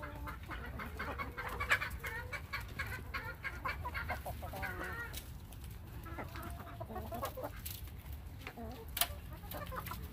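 A flock of backyard hens clucking, with many short calls scattered through, as they forage and peck on dirt.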